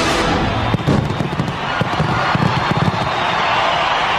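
Stadium pyrotechnics go off in a rapid string of bangs and crackles as a loud rock song's last crash dies away. About three seconds in, a large crowd's cheering takes over as a steady roar.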